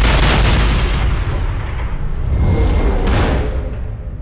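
Cinematic sound effects of a warship firing all its weapons: a huge gun blast with a long, deep rumbling tail, then a second sharp blast about three seconds in.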